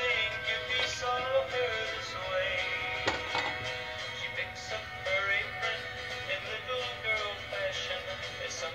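Background music with a singing voice.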